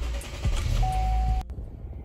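Chevrolet car engine running just after a push-button start, a low rumble in the cabin, with a short steady beep about a second in. It cuts off suddenly about a second and a half in, leaving quieter in-cabin road noise.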